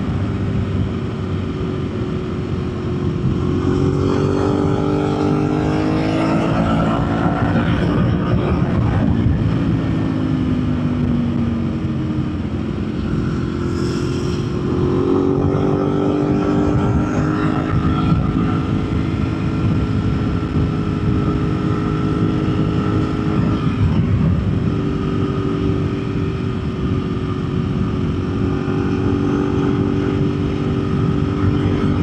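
Ducati 1098S's L-twin engine running under way with wind rush. The revs climb a few seconds in, drop back, climb again around the middle, then hold fairly steady.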